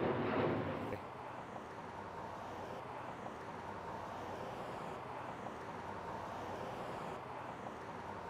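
Steady, low outdoor city ambience: a faint even hum of distant street traffic, a little louder in the first second.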